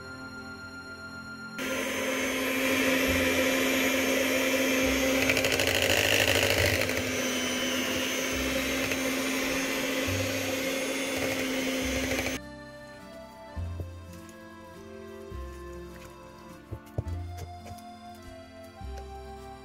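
Electric hand mixer running with a steady motor hum for about ten seconds, then switching off abruptly.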